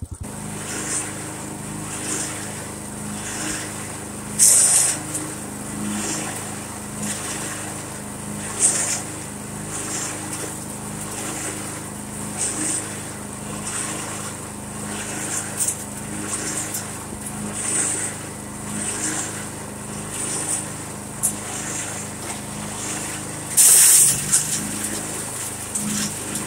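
Bearcat SC-3206 chipper shredder running on its 18 hp Duramax engine while branches are fed in: a steady engine drone with a crack of wood being cut every second or so, loudest about four seconds in and near the end. With its chipper knives now installed the right way round, it pulls the branches in by itself and does not kick back.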